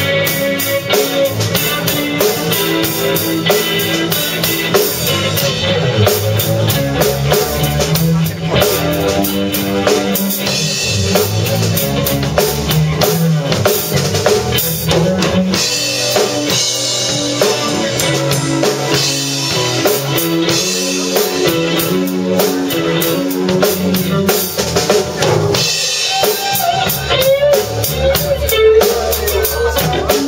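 Live rock band playing: a drum kit, electric bass and electric guitar together in a loud, steady groove.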